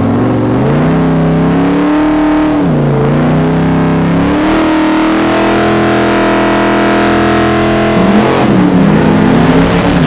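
Mk1 Ford Escort drag car's V8 revving hard through a burnout, its rear tyres spinning to warm them before a launch. The revs climb, dip briefly about three seconds in, climb again and hold high for several seconds, then waver near the end.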